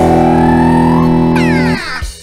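Live organ tarling band music: a loud, held chord with one note bending upward, then a falling pitch sweep. The music cuts off sharply near the end.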